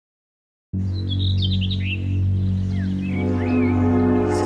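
A low, steady musical drone cuts in suddenly out of silence, with small birds chirping and twittering above it. About three seconds in, a fuller sustained chord swells in under the birds.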